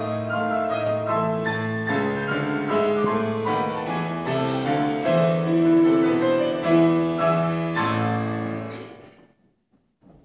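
Grand piano playing a slow classical passage of single notes and chords. The playing dies away to near silence about nine seconds in.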